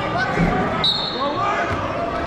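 Indistinct voices chattering in a gymnasium during a wrestling match. There is a dull thud about half a second in and a brief high-pitched squeak about a second in.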